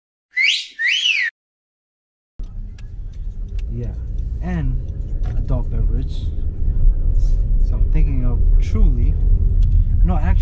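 Two short whistle glides just under a second apart, each rising and then falling in pitch, set between stretches of dead silence like an edited-in sound effect. From about two and a half seconds in, the low road rumble of a moving car's cabin, with indistinct voices over it.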